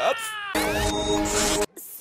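A cartoon boy's exaggerated crying wail, falling in pitch, then a short comic music sting of held tones that cuts off suddenly near the end.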